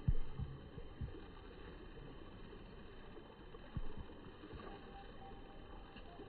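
Faint low background rumble with a few dull low thumps on the microphone: a sharp one right at the start, one about a second in and another near four seconds in.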